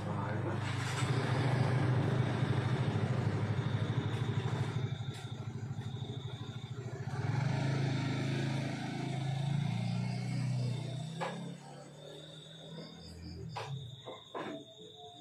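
A vehicle engine running with a low, steady drone that grows louder through the first ten seconds and fades after about eleven seconds.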